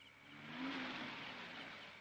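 A car driving past: engine and tyre noise swell over about half a second, peak around the first second, then gradually fade.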